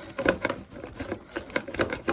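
Irregular clicks, creaks and rustles as the air intake hose and its clamp are twisted and wiggled by hand to work the hose off its fitting.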